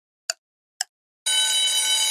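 Quiz countdown-timer sound effect: two ticks half a second apart, then a steady bell-like alarm ringing out from a little past halfway, signalling that time is up.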